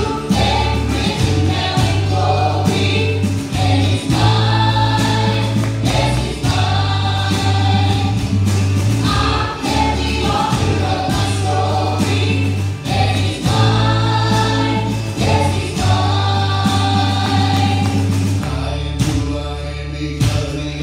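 Live church worship band playing a gospel song: several voices singing together over acoustic and electric guitars and a deep, steady bass line.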